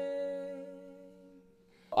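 Last strummed chord of a Takamine cutaway acoustic guitar ringing out and fading away, with a held sung or hummed note over it. The sound dies to near silence just before the end.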